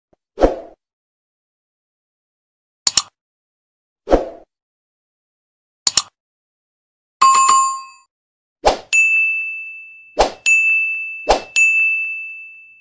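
Sound effects of an animated subscribe-button end screen. Four short, sharp clicks are spaced over the first six seconds, then a bell-like ding rings with several tones. After that comes a run of quick strikes, each followed by a high, steady ringing tone.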